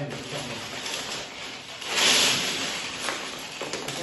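Loose plastic Lego bricks rattling as several hands sift and rummage through a pile on a table, loudest briefly about two seconds in.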